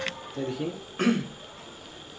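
A man clearing his throat: a short low vocal sound, then a harsher, louder burst about a second in. Right at the start a ringing acoustic guitar note is cut off with a click.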